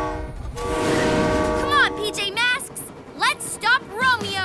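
Cartoon train horn sounding two blasts of a steady multi-note chord: a short one ending just after the start, then a longer one from about half a second in, lasting roughly a second and a half.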